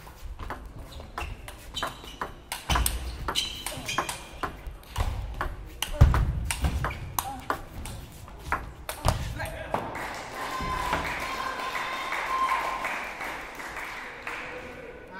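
Table tennis rally: the celluloid ball clicks sharply off the rackets and the table in a quick, irregular series, with a few heavier low thuds. It echoes in a large hall, and the clicking stops about ten seconds in.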